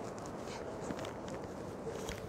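Footsteps on a hard, polished stone floor, faint and irregular, over a steady background hush of indoor ambience.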